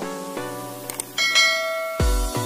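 Plucked-string background music, then a little over a second in a bright bell chime sound effect rings out and holds, cut off at the end by a dance beat.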